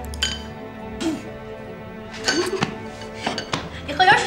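Chopsticks clicking and clinking against porcelain bowls and plates at a meal in several separate sharp clinks, with soft background music.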